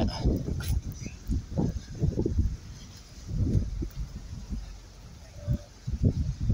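Irregular low rumbles and bumps from a handheld camera's microphone carried by someone walking.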